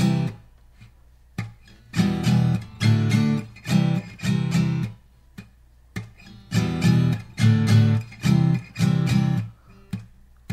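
Taylor GS Mini acoustic guitar being strummed through the chords C, E minor, D and C, in clusters of strokes with two short pauses between them.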